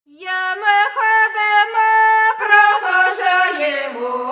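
Ukrainian traditional folk singing starts: a single high voice opens the song with long held notes that slide between pitches, and a lower voice joins near the end.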